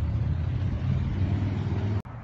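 A steady low rumble that cuts off abruptly at the end.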